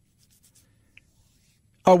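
Near silence, a pause in a man's talk with a couple of faint small ticks, then his voice starting again near the end.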